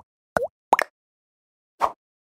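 Cartoon pop sound effects from an animated subscribe outro: three quick bloops in the first second, each a short pitch swoop down and back up, then one short noisy swish near the end.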